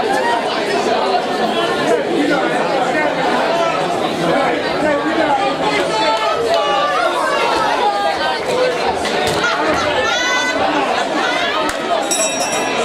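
Crowd of spectators chattering in a large hall, many voices talking over one another, with a few louder calls standing out.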